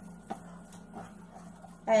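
A utensil stirring a wet zucchini pancake batter in a plastic container, a few faint taps and scrapes over a low steady hum.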